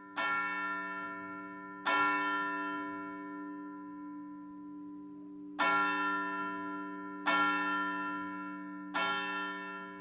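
A church tower bell tolling, struck five times at uneven spacing. Each stroke rings out and decays slowly, with its low hum carrying on under the next.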